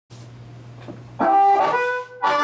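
Amplified blues harmonica played cupped against a vocal microphone, coming in with a loud held note about a second in, after a low steady hum.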